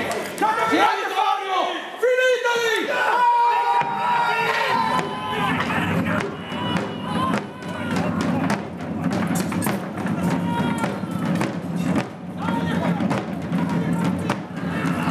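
Men shouting for the first few seconds, then side drums beating a fast, steady roll of strokes, with wooden pike shafts knocking together in a mock pike fight.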